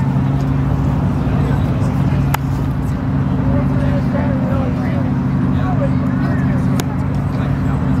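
A hot rod's engine idling steadily.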